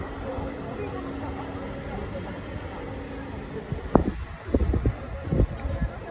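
A large vehicle passing close at low speed, its engine a steady low hum, followed from about four seconds in by a few short sharp clicks or knocks among voices.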